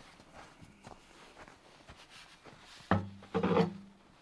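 Hands working at the opening of a snow-covered well shaft: faint scrapes and light knocks, then a sharp knock near the end followed by a short, louder clatter with a low ringing hum, as the well is cleared of ice.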